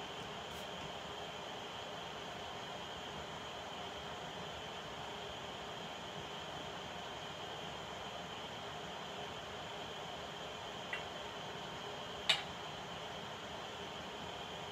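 Steady room tone: a low hiss with a faint, steady high tone. Near the end there is a small click, then a sharper one about a second later.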